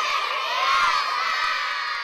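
A large crowd of children shouting and cheering together, a dense high-pitched clamour of many voices that slowly fades toward the end.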